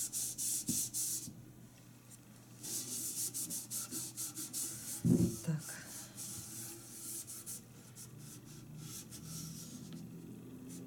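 A cloth rubbing back and forth on a chalk-painted metal watering can in quick repeated strokes, wiping off an inkjet-transferred image. A run of strokes, a pause of over a second, a second longer run, then fainter strokes.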